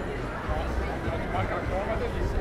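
Voices of passers-by talking on a busy pedestrian street, overlapping into an indistinct murmur of chatter over a steady low background rumble.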